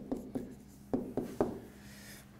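Pen writing on an interactive whiteboard screen: a handful of short taps and strokes against the screen as a word is written, easing off in the last half second.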